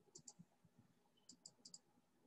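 Near silence with a few faint computer mouse clicks, several of them in quick pairs.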